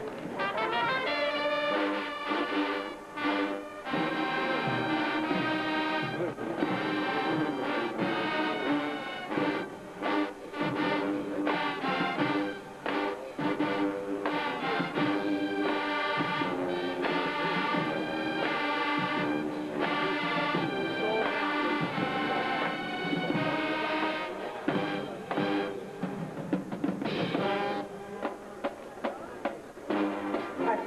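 High school marching band playing a loud piece on the field, several brief breaks between punchy phrases.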